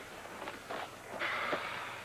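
Paper rustling as a notebook is opened and handled, with small taps and then a denser rustle for about the second half.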